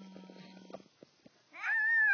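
A young child's wordless voice: a low, rough, drawn-out vocal sound, then quiet, then a loud high-pitched squeal that rises and falls near the end.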